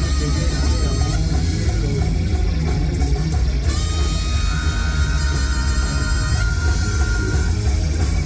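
Live rock band playing loudly, with heavy bass, guitar and drums filling the room, heard from within the crowd. A high note is held for about three seconds in the middle.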